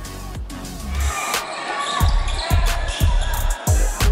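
A basketball bouncing on a hardwood court with a few sharp thumps, starting about a second in, with court noise and a music bed underneath.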